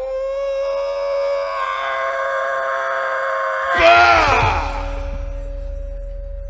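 A long, held vocal cry from the wayang golek puppeteer voicing a puppet character. It ends about four seconds in with a louder shriek that falls sharply in pitch. A steady sustained tone carries on beneath it afterwards.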